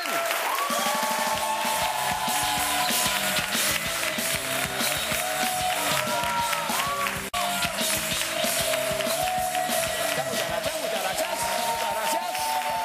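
Music with a steady rhythmic bass line and held melody notes, played over a studio audience clapping and cheering. The sound cuts out briefly about seven seconds in.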